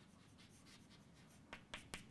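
Faint chalk writing on a blackboard: light strokes and a few short taps of the chalk, clearest near the end, over near silence.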